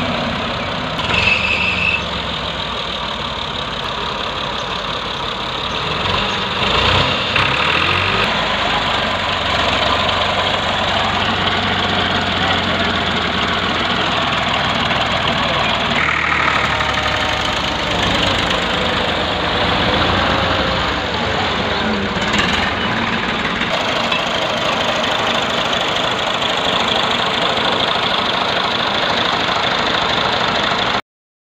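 Farm tractor engines running loudly and steadily, the sound changing in character twice as different tractors are heard.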